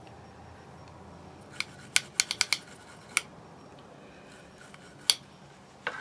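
A handful of sharp, light clicks and taps from small hard objects being handled: a quick cluster of about six around two seconds in, then single clicks about three and five seconds in.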